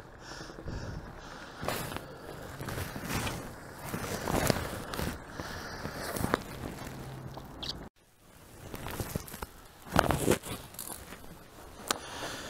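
Fat tyres of a recumbent trike crunching slowly over a gravel and leaf-strewn trail, with scattered clicks and rustles. The sound cuts out briefly a little under two-thirds of the way through, then resumes.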